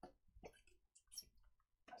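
Near silence with a few faint, short clicks and mouth sounds from drinking out of a plastic bottle.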